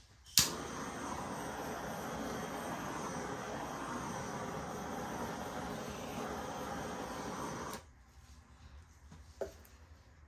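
Handheld gas torch clicking on and running with a steady hiss for about seven seconds, then shut off abruptly, as it is passed over wet acrylic paint on a canvas to pop air bubbles. A faint click follows near the end.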